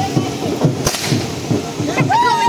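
Outdoor street ambience with a low, regular thudding about four times a second and one sharp crack a little under a second in.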